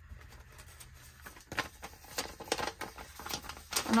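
Paper handling: dollar bills and a paper envelope rustling and tapping as they are picked up and moved. The sound is a string of short, crisp rustles and taps, mostly after the first second.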